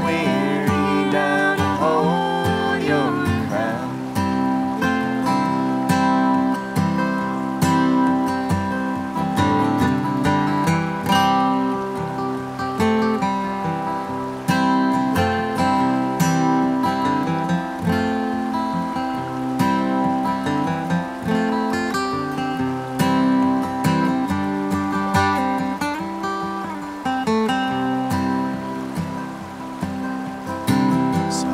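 Solo acoustic guitar playing an instrumental break in a folk song: a steady run of picked notes and strums on a capoed steel-string guitar.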